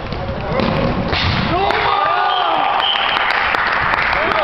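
Players and onlookers shouting together in an echoing sports hall during a futsal game, the shouts swelling about a second in, with a thud of the ball just before.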